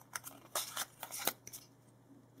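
Pokémon trading cards handled and slid against one another: several short, crisp card-on-card scrapes and snaps in the first second and a half.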